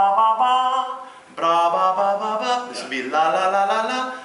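A man's voice imitating a trumpet, sung on 'ba' syllables through hands cupped over his mouth, which gives a rounder, muffled horn-like tone. One short phrase, a brief break about a second in, then a longer phrase.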